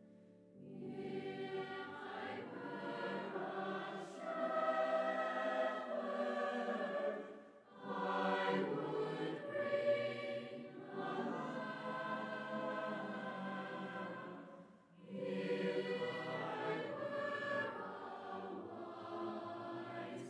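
Choir singing in a large church, in long sustained phrases with brief breaks about 8 and 15 seconds in.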